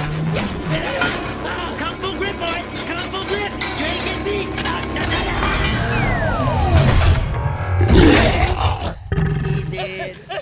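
Action-film battle soundtrack: dramatic score under dense mechanical sound effects of a giant robot smashing through debris, with shouting. A falling whistle comes about six seconds in, and the loudest impact lands around eight seconds before the sound cuts away abruptly.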